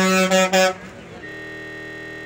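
A vehicle horn held in one long, steady blast, broken briefly twice and cut off under a second in. A fainter steady tone follows until the end.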